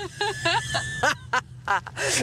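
Two women laughing, in short broken bursts, with a steady low drone of the car's engine and road noise in the cabin underneath.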